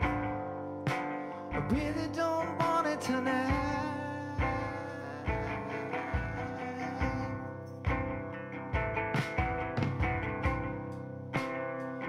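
Live band music: a small ukulele-like stringed instrument played over a drum kit, with the bass drum keeping a steady beat about every three-quarters of a second.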